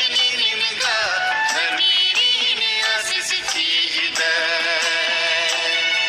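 Kurukh Christian devotional song: a singing voice with vibrato over instrumental accompaniment.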